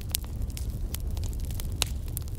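Crackling fire ambience: a steady low rumble with a few sharp pops, the clearest near the end.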